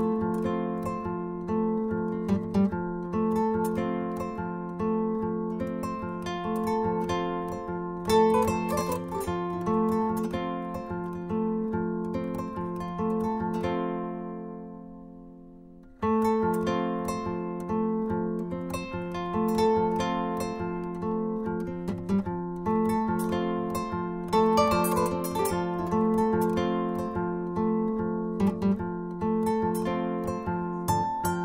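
Solo kora, the West African calabash harp-lute, played with a repeating bass pattern under quick melodic runs of plucked notes. The playing dies away about fourteen seconds in and starts again abruptly, at full level, about two seconds later.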